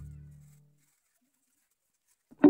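A sustained low note of background music dying away in the first half-second, then near silence.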